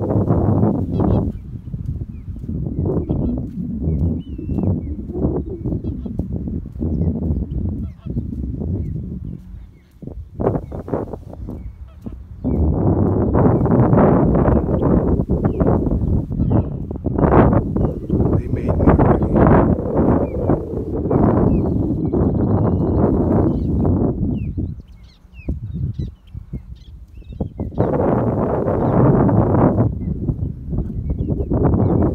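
Wind buffeting the microphone in gusts, with flamingos honking in the distance.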